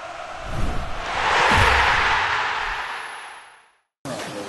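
Intro sting sound effect: a broad rush of noise that swells to a peak and fades away, with a couple of deep thuds underneath.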